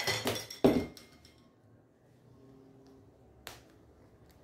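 A fabric bag being handled on a cutting mat: cloth rustling for the first half-second, then a single knock against the table. After that it is quiet apart from one small click near the end.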